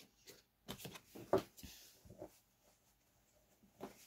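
Small taps and clicks of cards and a plastic die being handled and set down on a cloth-covered table, a handful of short knocks with a soft sliding rustle in between.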